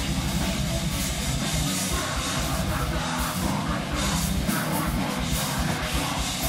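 A technical death metal band playing live at full volume, with distorted electric guitars, electric bass and drum kit, over a fast, even pulse in the low end.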